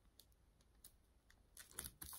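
Near silence with a few faint light clicks and taps from sheets of parchment paper being handled on a diamond painting canvas, then a brief soft rustle near the end as the paper is smoothed down by hand.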